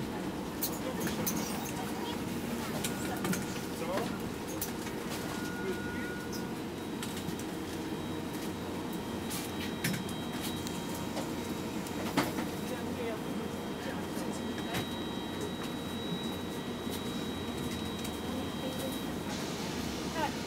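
Inside a city bus: steady low engine hum and cabin rumble, with scattered clicks and rattles and a faint high whine through the middle.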